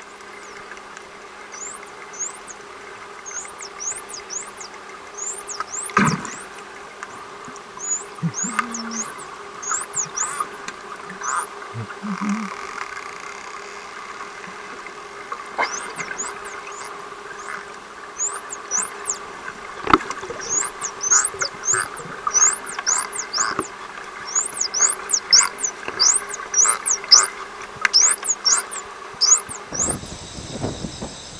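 Indo-Pacific bottlenose dolphins whistling underwater: many short, rising whistles in quick clusters, with a few sharp clicks, over a steady low hum.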